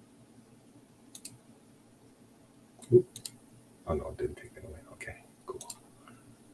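A few sharp clicks about a second in, then a louder knock with more clicks near three seconds in, then a short stretch of low, wordless voice sounds mixed with clicks near the end.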